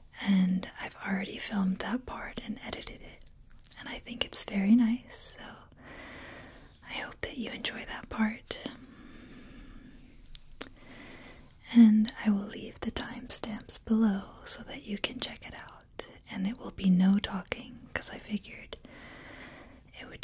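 Only speech: a woman speaking softly, half-whispered, close to the microphone, with a pause of a few seconds about halfway through.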